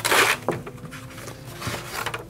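Cardboard-and-foam packaging being handled: a loud rustling scrape for about the first half-second, then quieter rustles and a couple of light knocks.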